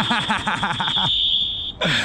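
A single long, steady whistle blast that cuts off near the end, blown to stop play, with a burst of laughter over its first second.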